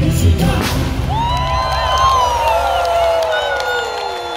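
Live band and singers ending a pop song: the band's beat stops about a second in, with a bang as confetti cannons fire, and long held notes slide down in pitch over a cheering crowd.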